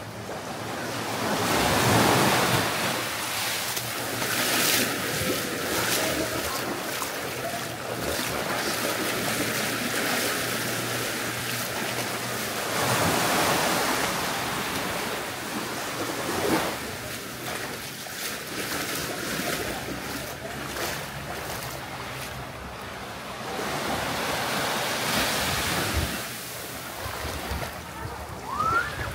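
Small waves washing onto a sandy beach, with wind buffeting the microphone. The noise rises and falls in swells every few seconds over a faint low steady hum.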